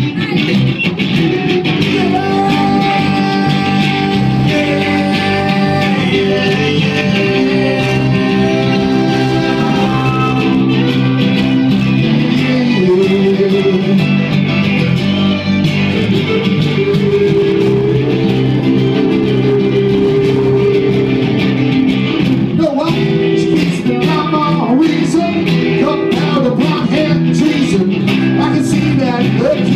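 Live acoustic band music: two guitars playing a song, with singing heard at times.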